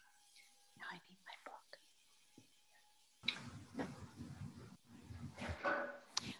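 Faint whispered or hushed speech, off-microphone, starting about three seconds in, with a few faint brief sounds before it.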